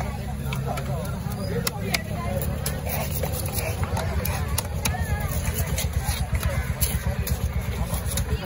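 A heavy curved fish-cutting knife knocks sharply on the fish and the wooden chopping block now and then. Under it runs a steady low rumble, like an engine running, with background voices.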